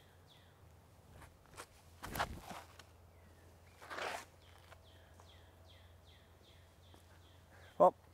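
Faint footsteps on a dirt tee pad during a disc golf throw. A short whoosh about four seconds in marks the release. A bird chirps repeatedly in quick, short falling notes behind it.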